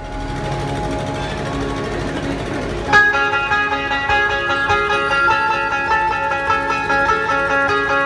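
Live dhumal band music over loudspeakers, with drums under it; about three seconds in, a loud amplified plucked-string melody comes in suddenly and carries the tune.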